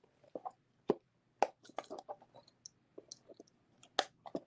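A gold-filled chain and cameo locket pendant handled by fingers: a scatter of faint, irregular small clicks and ticks.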